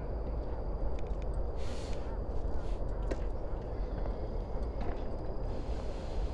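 Outdoor ambience at a tennis court: a steady low rumble with a few faint, sharp knocks scattered through it and a brief hiss about a second and a half in.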